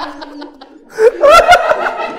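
A man laughing in chuckles. The laughter is quieter at first and comes loud and broken from about a second in.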